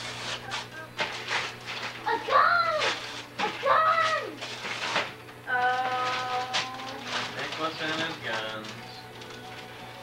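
Wrapping paper rustling and tearing as presents are unwrapped, with a few high, drawn-out pitched sounds that rise and fall, one of them held steady for about a second a little past the middle.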